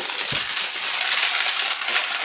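Cardboard shipping box handled and slid close to the microphone: a steady scraping rustle, with a low thump about a third of a second in.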